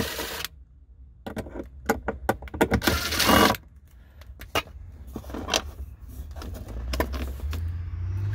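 Cordless impact driver spinning out the cup holder's Phillips screws in two short bursts, one at the very start and a longer one about three seconds in. Between and after them come clicks and rattles of loose screws and plastic console trim being handled.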